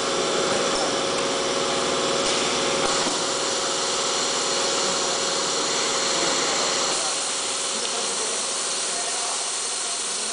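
Automated foil cutting and separation machine running: a steady mechanical hum and hiss with a held tone, easing slightly about seven seconds in.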